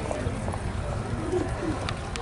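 A bird cooing, a few short low falling notes in the second half, over a steady low rumble.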